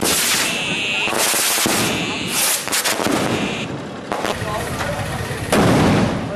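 Firecrackers going off in the street: a run of sharp bangs at uneven intervals, several in quick succession around the middle.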